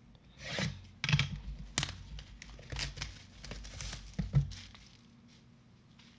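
Plastic shrink wrap being torn off a cardboard trading-card box, crinkling and rustling in a series of short tears. The sound dies down about four and a half seconds in.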